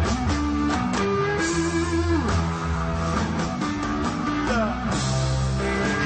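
Live rock band: electric guitar playing lead lines with bent, sliding notes over bass and drums.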